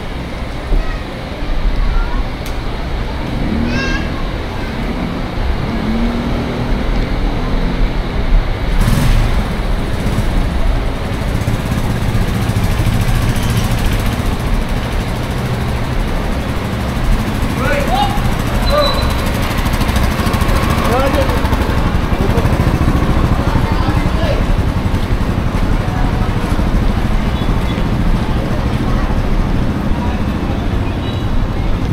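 Steady hiss of heavy rain on a narrow city street, growing louder about ten seconds in, with passersby's voices heard now and then.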